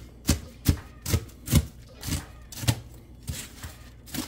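Large kitchen knife chopping crunchy, crisp-cooked bacon on a plastic cutting board: about eight uneven knife strikes, roughly two a second.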